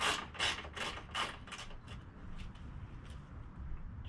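A hand socket ratchet turns out a 12 mm horn-mounting bolt in a quick run of ratcheting strokes, about three a second. The strokes thin out and grow fainter about halfway through as the bolt comes loose.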